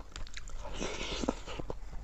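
Close-up wet chewing and lip-smacking of a mouthful of soft milk rice pudding (sangom kher), many small clicks in a row, with a brief rustling hiss about a second in.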